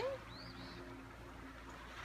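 Faint outdoor ambience with a single brief high bird chirp about half a second in, over a faint steady low hum and low rumble.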